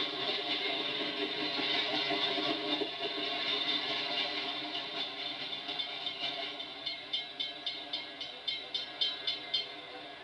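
A train passing through a grade crossing: a steady rumbling rush, then a quick run of rhythmic clicks about three a second, like wheels over rail joints, which stops abruptly near the end.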